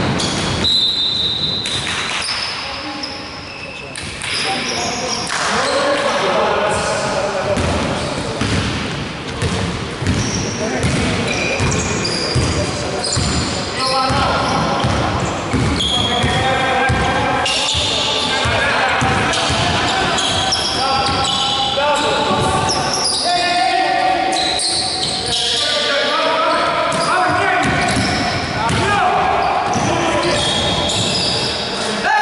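Basketball bouncing on a hardwood gym floor during play, with voices calling out, echoing in a large hall.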